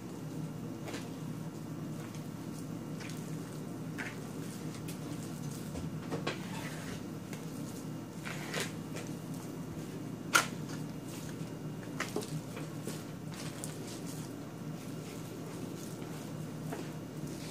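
Hands kneading and squeezing a soft mashed-potato dough on a tray, with scattered light clicks and knocks, one louder knock about ten seconds in, over a steady low hum.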